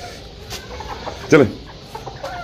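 Domestic chickens clucking faintly as they are shooed along, with a man's short call about a second and a half in.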